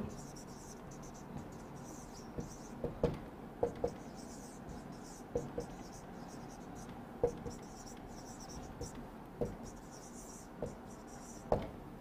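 Marker writing on a whiteboard: short, faint scratchy strokes, stroke after stroke, with a few small taps as the tip meets the board.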